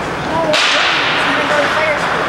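Ice skate blades scraping hard across the ice in a hissing stop. The scrape starts suddenly about half a second in and fades slowly.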